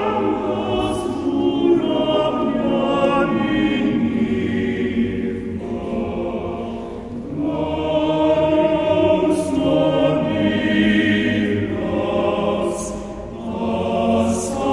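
Men's choir singing a cappella in sustained, multi-voice chords, its phrases easing off briefly about seven seconds in and again near the end.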